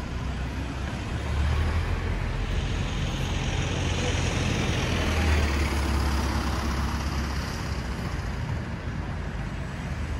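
Road traffic at a city junction: a motor vehicle passes close, its low engine rumble and tyre noise swelling over a few seconds in the middle, then fading back into the general traffic hum.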